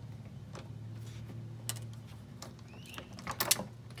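Hand crimping tool clamping a gold-plated bayonet connector onto a wire: a few scattered metallic clicks, with the loudest cluster about three and a half seconds in, over a steady low hum.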